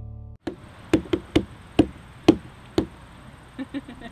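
Closing music cuts off abruptly, then a series of about seven sharp knocks, irregularly spaced over two and a half seconds, followed near the end by a quicker run of softer taps.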